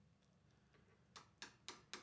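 Light, even taps of a chisel being struck into a hardwood blank along a cut line, starting about a second in at roughly four taps a second.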